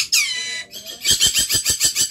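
Green-cheeked conure calling a high, mimicked 'annyeong' (hello), then a rapid chattering run of about eight short notes, 'kkakkakka'.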